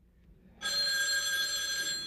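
A telephone ringing for an incoming call. It is one steady ring that starts about half a second in, after a moment of near silence.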